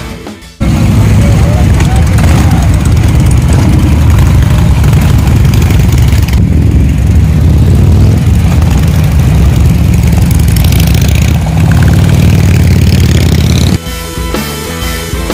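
Harley-Davidson V-twin motorcycles running close by with a loud, deep rumble that cuts in suddenly about half a second in.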